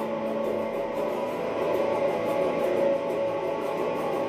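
Guitar playing a blues accompaniment, with no singing over it.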